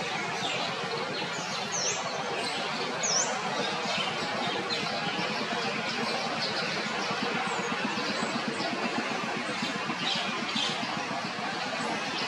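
Small birds chirping: repeated short high chirps, with a couple of quick swooping notes in the first few seconds, over a steady outdoor background hiss.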